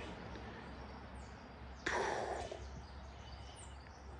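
Quiet creekside ambience with faint, high bird chirps, and a short rushing swish about two seconds in.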